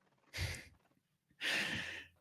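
A person breathing audibly, twice: a short breath about half a second in, then a longer, louder breath from about a second and a half, just before the next speaker begins.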